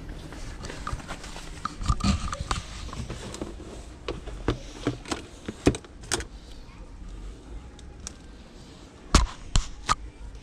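Plastic dolls and toys clattering as hands rummage through a bin of them and pull out a tangled bundle: irregular sharp knocks and rattles throughout, the loudest two knocks near the end.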